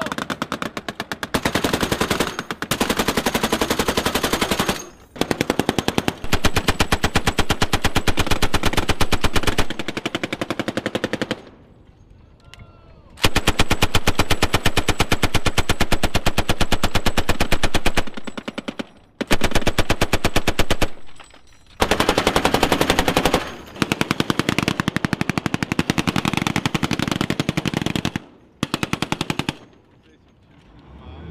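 Mounted machine gun firing long bursts of rapid, evenly spaced shots. Several bursts are separated by short pauses, the longest about midway through.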